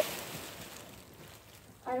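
Soft rustling of movement close to the microphone, fading away over about two seconds into quiet room tone.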